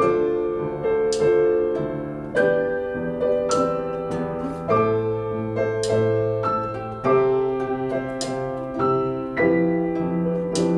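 Slow, mellow instrumental music: piano and an archtop guitar play sustained chords, with a bright, high accent recurring about every two and a half seconds.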